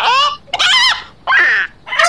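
A quick string of different bird-call sound effects played one after another: short pitched calls, about three in two seconds, each with its own rise and fall in pitch, some fowl-like.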